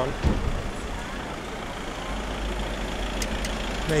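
Steady outdoor street noise with a low rumble and a brief thump just after the start.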